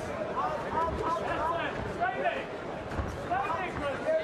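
Indistinct voices over steady arena background noise, with a few dull thuds.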